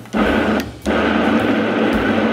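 Countertop blender puréeing a cooked fruit mixture: one short pulse, a brief stop, then switched on again under a second in and running steadily.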